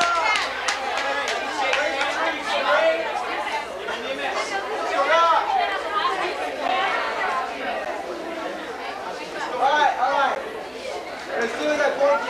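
A group of teenagers talking and laughing over one another: lively, overlapping chatter with no single clear voice.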